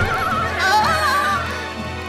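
Cartoon background music under a high, quavering, whinny-like voice laughing, its pitch wobbling and gliding; the voice fades out a little past the middle.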